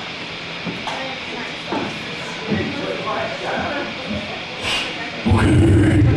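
Indistinct voices and chatter in a bar room, then about five seconds in a loud, low amplified electric guitar sound cuts in for about a second.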